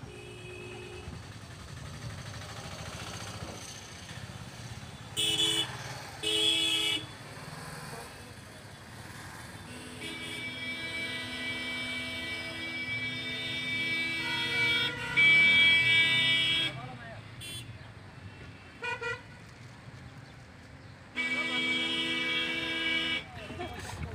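Vehicle horns honking over road traffic noise: two short toots, then a long drawn-out blast that grows louder, a brief toot, and another blast of about two seconds.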